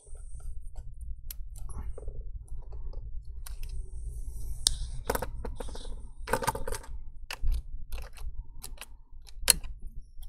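Scattered small clicks and taps of a spudger and fingers working at a laptop's CPU fan and its cable connector, with a brief light scraping about four seconds in, over a low steady hum.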